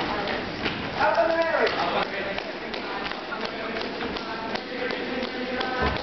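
Dancers' feet stomping and tapping on the stage floor in a quick, uneven stream of knocks, with voices calling out over them, one falling call about a second in.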